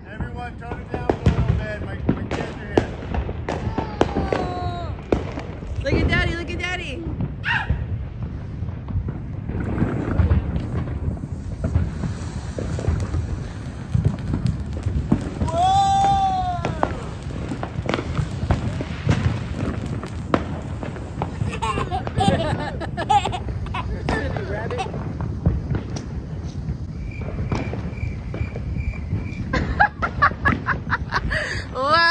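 Consumer fireworks popping and crackling all around, with a ground fountain firework hissing and spitting sparks.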